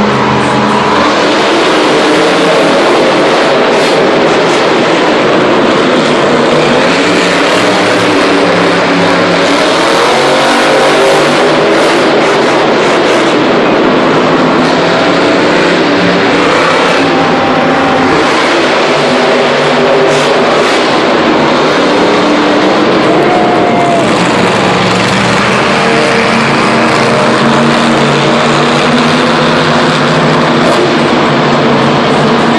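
Monster truck engines, supercharged V8s, running and revving loudly as the trucks drive the arena course, the engine note rising and falling over a constant roar.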